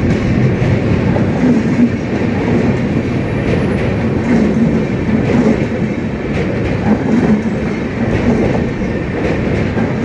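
Humsafar Express LHB coaches passing close by at speed: a continuous rumble of wheels on rail with repeated clacks as the bogies cross rail joints.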